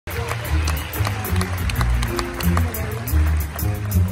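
Live music from a small band of grand piano, bass and drums, with a strong bass line moving note to note and steady strokes on the drum kit.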